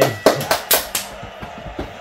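A few sharp hand claps and slaps, including a high-five, in the first second, then quieter.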